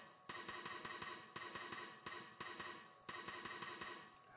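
A General MIDI drum pattern of closed hi-hat and side-stick notes played back from a MIDI file through a synthesizer, heard faintly as a steady rhythm of short clicking strokes about three a second.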